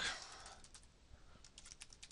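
Typing on a computer keyboard: a run of light, irregular key clicks, after a brief hiss at the start.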